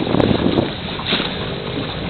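Wind buffeting the microphone on the water, a steady rushing noise that gusts a little louder at the start.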